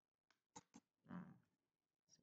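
Near silence, a pause in the talking: two faint clicks a little after half a second, then a faint, short, soft sound about a second in.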